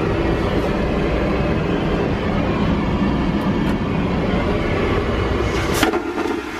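Steady loud roar of an airliner in flight heard inside the cabin lavatory, with one sharp clack near the end as the vacuum toilet flushes.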